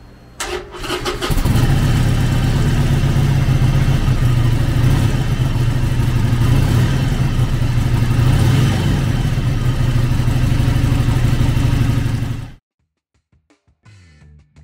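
Harley-Davidson Sportster 1200 Seventy-Two's air-cooled 1200cc V-twin cranking on the starter, catching about a second in, then running loud and steady. The sound cuts off abruptly near the end.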